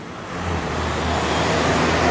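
Road traffic noise that swells up about half a second in, with a steady low hum of engines underneath.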